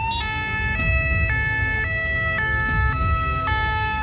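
An emergency-vehicle siren finishes a rising wail and switches into a two-tone hi-lo pattern, changing pitch about every half second. A low traffic rumble runs underneath.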